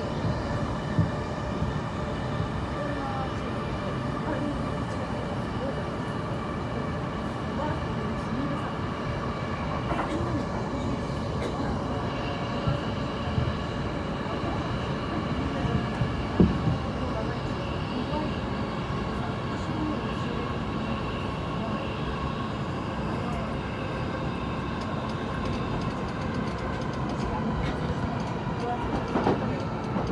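Interior of a JR Yokohama Line electric commuter train running along the track: a steady rolling rumble of wheels on rail with a steady whine over it, heard from inside the carriage. A couple of brief knocks come through, one about a second in and a louder one about halfway through.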